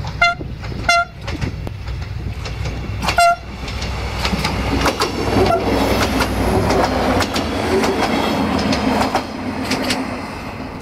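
Siemens Desiro VT642 diesel multiple unit sounding its horn: two short toots about a second apart, then a slightly longer one about three seconds in. The train then runs past close by, its engine rumbling and its wheels clicking over the rail joints.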